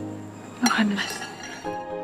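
A single sharp clink of a metal utensil against tableware about half a second in, ringing briefly, over soft background music.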